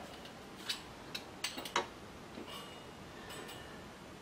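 A few faint, short clicks and light taps, bunched in the first half, over quiet room tone, like small objects being handled on a worktable.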